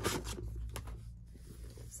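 Metal zipper on a Coach handbag being drawn open, a short rasp that is loudest at the start, followed by a small click and soft rustling of the bag as it is spread open.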